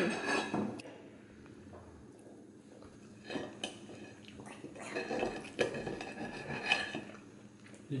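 Knife and fork clinking and scraping on a ceramic dinner plate as steak is cut, in short scattered clinks starting about three seconds in.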